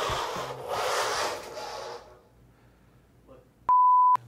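A hiss that fades away over the first two seconds, then silence, then near the end a sudden loud, steady beep: the reference tone that goes with a television colour-bar test pattern.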